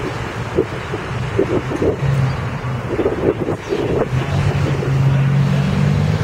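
Street traffic: a vehicle engine's steady low hum that sets in about two seconds in, over wind on the microphone.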